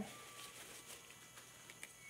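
Near silence: faint room tone with a few soft, short ticks.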